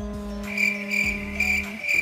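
Soft background music with a held low note. From about half a second in, a high chirping call repeats about three times a second.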